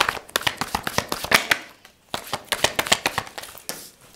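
A deck of tarot cards being shuffled by hand: two runs of rapid papery card flicks with a brief pause about halfway through.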